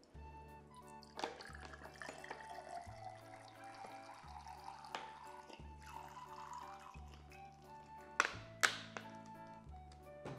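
Background music with a steady bass line. Under it, vinegar is poured from a plastic squeeze bottle into a glass for about five seconds, followed by a couple of sharp knocks near the end.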